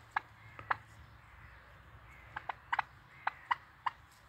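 Poultry giving short, sharp alarm calls at a cat: about ten clipped notes in an irregular series, a few near the start and a bunched run in the second half.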